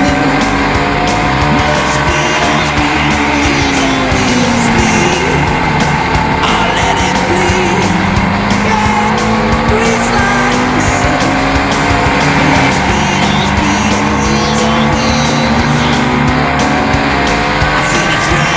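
Sport motorcycle engine heard onboard at speed on a race track, its pitch slowly rising and falling over several seconds as it accelerates and eases off, with music playing underneath.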